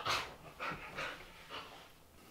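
Husky-mix dog breathing in soft, breathy puffs, four or five about half a second apart, while being petted.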